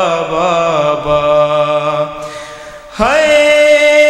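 Male voice chanting a noha, an Urdu mourning lament, in long drawn-out held notes. The sound thins and fades about two seconds in, then a new note starts suddenly near three seconds and is held steady.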